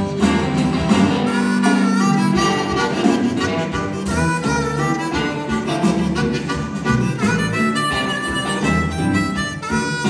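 Live blues band playing: a harmonica played into a vocal microphone, its notes bending, over electric guitar.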